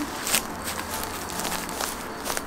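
Footsteps hurrying over dry forest ground and through low shrubs, a few sharp steps among the rustle of brush.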